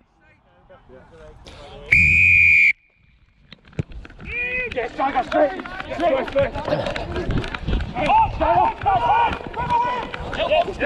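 A single referee's whistle blast of under a second, about two seconds in, signalling the kick-off; then many voices shouting and calling over one another as play gets going.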